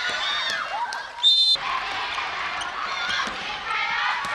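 Young players shouting on an indoor futsal court, with short knocks of the ball, and one short, loud referee's whistle blast about a second in.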